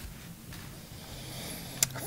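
Faint low steady hum over light hiss, with one sharp click near the end.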